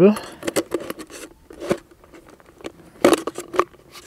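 Thin plastic bottle crinkling and clicking as a coaxial cable and its connector are pushed down inside it. The sound comes as a series of short crackles, with a louder burst about three seconds in.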